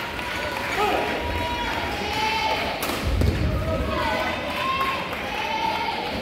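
Badminton rally: a racket striking the shuttlecock, with footfalls and shoe squeaks on the court mat, and voices in the background.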